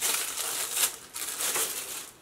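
Packaging being handled, rustling and crinkling in a run of short, irregular crackles.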